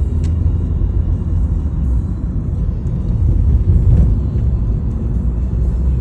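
Steady low rumble of a moving car heard from inside the cabin: engine and road noise, swelling slightly about four seconds in.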